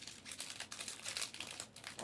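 Plastic trading-card pack wrappers crinkling as hands handle and open packs: a run of small, irregular crackles.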